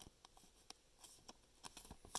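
Near silence with a few faint, scattered clicks of trading cards being handled.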